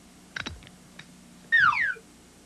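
A sharp click, as of a knob being turned, and a faint tick, then near the end a loud synthesized sound effect sweeping down in pitch for about half a second as the room flips over.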